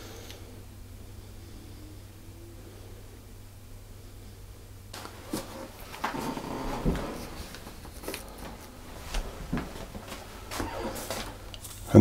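A low steady hum, then from about five seconds in irregular rustling and light knocks of hands handling things on a kitchen counter as a plastic piping bag is set aside.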